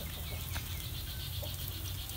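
Outdoor ambience: a rapid, high-pitched pulsing chirp from a small animal repeats steadily, with a few faint short chirps and a low steady rumble. A single light click comes about a quarter of the way in.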